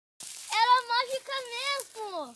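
A high-pitched voice calling out in long, drawn-out, wavering vowels that the speech recogniser did not take as words, after a brief burst of hiss.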